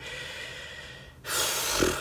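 A man's audible intake of breath, a noisy rush about a second long that starts a little past halfway through, taken as he pauses between sentences.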